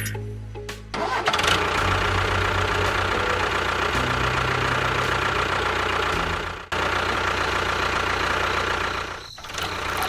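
A small motor running steadily, starting about a second in, with a brief break near seven seconds and a dip near nine seconds; music plays along.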